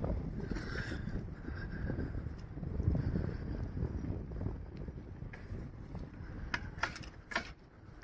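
Outdoor ambience during a walk: an uneven low rumble of wind on the microphone, with a few light clicks in the last few seconds.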